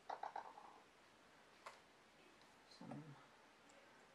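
Faint clicks and taps from handling small plastic paint bottles and a syringe: a quick cluster about half a second in, then a single click near the middle.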